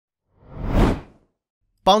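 A single whoosh transition sound effect that swells up and fades away over about a second.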